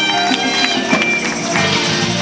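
Live band playing a groove, with guitar, drums and hand percussion in the mix.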